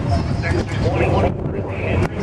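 Low rumble of drag-race car engines idling at the starting line, with indistinct voices over it.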